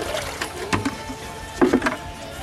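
Water poured from a bucket, splashing into a shallow metal basin.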